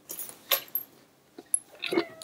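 A few short rustles and handling noises as a cat is pushed and lifted off by hand.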